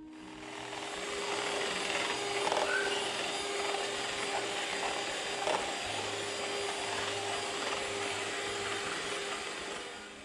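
Electric hand mixer running steadily, its beaters whisking eggs into a froth in a plastic bowl: a constant motor hum under a whirring rush. It fades in over the first second and fades out near the end.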